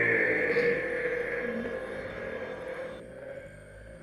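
Slowed-down slow-motion audio: a drawn-out, sustained sound with a steady higher tone over a lower one, slowly fading out, its upper part dropping away about three seconds in.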